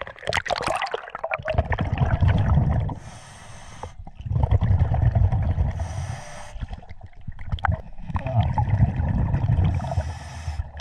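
A splash as the diver goes under, then a scuba regulator heard underwater: three rounds of exhaled bubbles rumbling low, each followed by the hiss of an inhale through the regulator.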